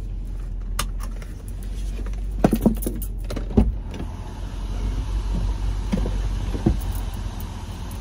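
A few knocks and clicks inside a vehicle's cabin, then from about four seconds in the side window slides down on its power-window motor and a steady rush of outside noise comes in, over a low hum.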